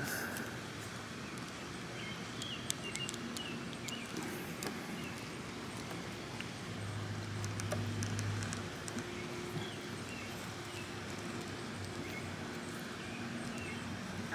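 Sparse faint clicks and taps of plastic action-figure parts and a clear plastic effect piece being handled and pushed together, over a faint steady outdoor background.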